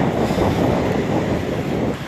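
Steady rushing wind noise on an earphone microphone.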